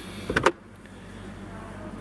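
Car glovebox being opened: the handle is pulled and the latch clicks about half a second in, then the damped lid swings down slowly and quietly.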